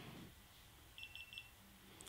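GoPro Hero3 Black Edition action camera beeping three quick times about a second in as it powers on, its firmware update finished.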